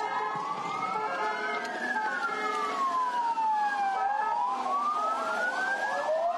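Police vehicle sirens wailing: one siren slowly rises, falls and rises again, and a second siren with a faster up-and-down cycle comes in near the end.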